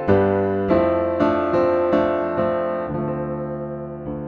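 Piano sound from a software piano preset in Arturia Analog Lab, played live from an Arturia KeyLab MkII 49 MIDI keyboard: a run of chords struck about every half second, the last one held and left to fade.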